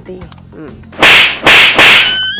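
Three loud whip-crack sound effects in quick succession, starting about a second in, each a short hiss-like crack, marking slaps on a plastic motorcycle helmet.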